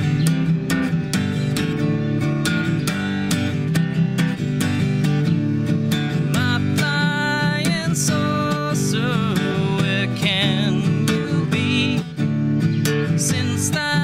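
Steel-string Masterbilt acoustic guitar strummed in a steady rhythm as the intro to a folk song. From about six seconds in, a wavering melody line rides over the strumming.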